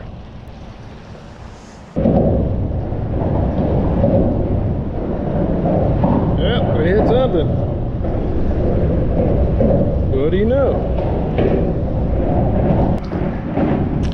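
Wind buffeting the microphone: a loud, steady low rumble that starts abruptly about two seconds in.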